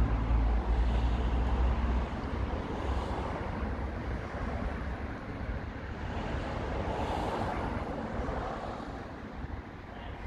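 Road traffic going by, with a strong low rumble in the first two seconds. A passing vehicle swells about seven seconds in, and the noise then fades toward the end.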